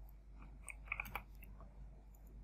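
A few faint, short clicks over a low steady hum.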